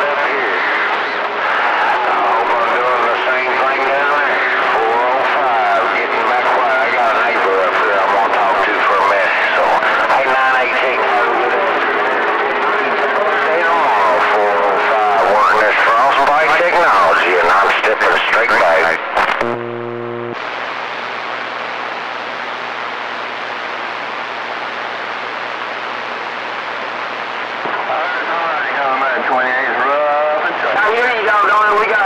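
CB radio receiving skip on channel 28: several distant stations talk over one another, garbled, with steady heterodyne whistles where their carriers beat. About 19 seconds in the voices cut off abruptly. After a short tone comes a steady low hum under hiss, like an open, unmodulated carrier, and voices return near the end.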